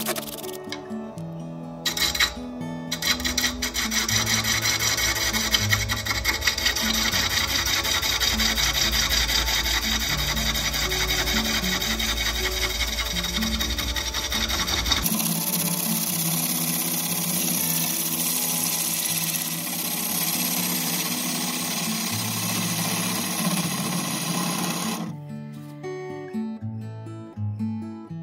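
A turning tool cutting a spinning ambrosia maple bowl blank on a wood lathe, a steady rough scraping that changes character about halfway through, over background music. Near the start there are a few short bursts from a cordless impact driver fastening the faceplate.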